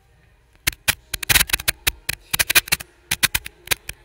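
A quick, irregular run of loud, sharp clicks and knocks, about fifteen in all, starting under a second in and coming in clusters.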